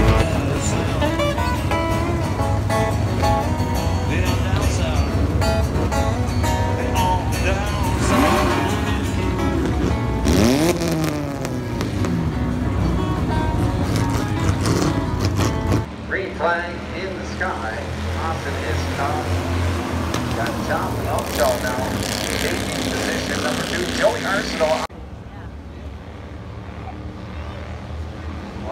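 Race car engines on a short oval, mixed with music for roughly the first half and a loudspeaker announcer's voice. The sound changes about 16 s in and drops in level about 25 s in.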